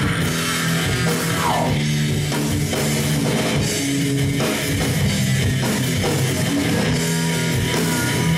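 Live rock band playing an instrumental passage on electric guitar, bass guitar and drum kit, at a steady loud level.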